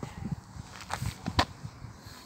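Wine glugging out of a tipped glass bottle and splashing into a street drain, in irregular pops.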